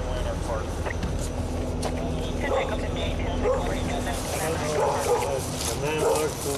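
A dog barking and yipping in short calls from a few seconds in, over the low rumble of a vehicle engine.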